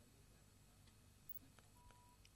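Near silence: a faint low hum of room tone with a few very faint ticks.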